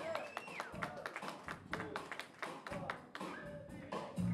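Scattered claps and sharp taps mixed with voices and a few short calls in a hall, a rock band standing by between songs.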